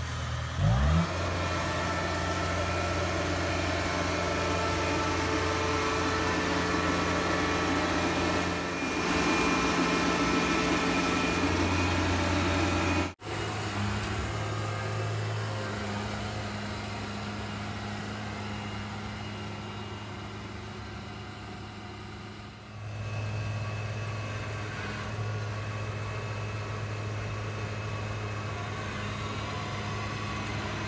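Kubota Harvest King DC-68G combine harvester's 68 hp diesel engine running under load as the machine travels, with its engine speed rising about a second in. The sound cuts off abruptly for an instant about 13 seconds in, then carries on steadily.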